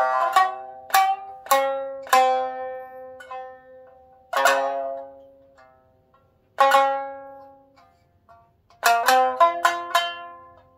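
Shamisen played solo with a bachi plectrum: single plucked notes, each left to ring and die away, spaced out with pauses between them, then a quick cluster of notes near the end.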